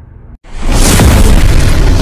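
Explosion-style boom sound effect in an animated logo intro: after a brief dropout, a sudden loud hit about half a second in that stays loud and full.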